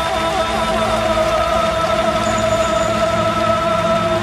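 Live ballad: a male singer holds one long high note over full orchestral accompaniment.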